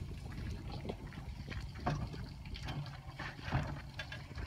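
Water trickling steadily out of the boat's draining live wells, with a few light knocks from the boat deck.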